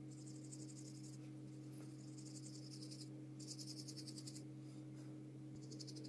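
Paintbrush dabbing and stroking acrylic paint onto paper in short, scratchy strokes. The strokes come in about four bursts of roughly a second each, over a steady low hum.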